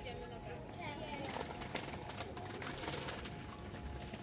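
Outdoor background of people talking at a distance, with faint bird calls and a few scattered clicks.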